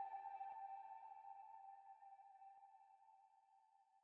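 The tail of a trap instrumental beat: one held electronic note rings on by itself and fades away over about two and a half seconds as the track ends.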